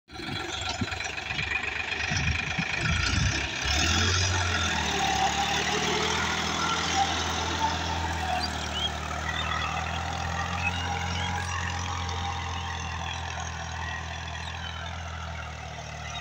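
Case IH JX50T tractor's diesel engine with a rear rotary tiller working the soil. Uneven low thuds for the first few seconds, then a steady drone from about three and a half seconds in that slowly grows fainter as the tractor moves away.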